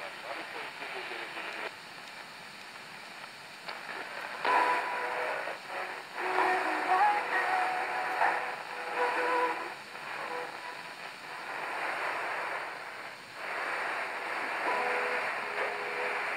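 Shortwave reception on an Eton G6 Aviator portable receiver's speaker: static hiss while tuning between stations, then from about four seconds in a weak station playing music through the noise, its level rising and falling. The station tuned is 11565 kHz, WHRI Voice of Praise from South Carolina.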